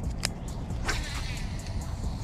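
Outdoor ambience: a steady low rumble, a single sharp click about a quarter second in, and faint high chirping in the second half.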